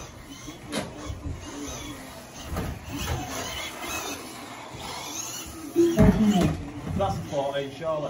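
Team Associated B74.1 1/10 electric 4WD buggy running on an indoor carpet track, its motor whine rising and falling as it is driven. Voices are heard alongside, loudest about six seconds in.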